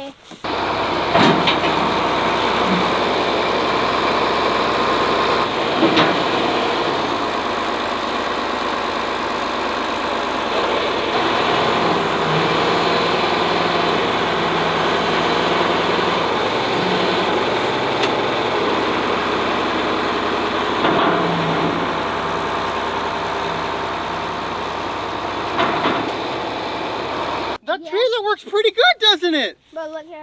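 John Deere farm tractor engine running steadily while its front-end loader scoops and dumps hay, the engine note shifting a few times as the loader works. The sound cuts off suddenly near the end.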